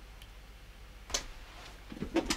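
Quiet room tone broken by a faint tick near the start and a single sharp click about a second in.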